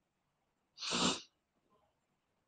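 A single short, breathy burst of a person's breath, about half a second long, about a second in.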